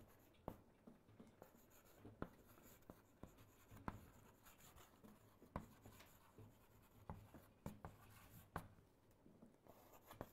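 Faint scratching of handwriting, broken by irregular sharp taps.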